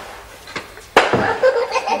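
A sharp knock about a second in, followed at once by a person's laughter.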